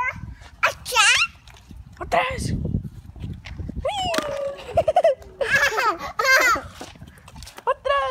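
A toddler's high-pitched babbling and squeals in several short bursts, with no clear words, some sweeping sharply up in pitch.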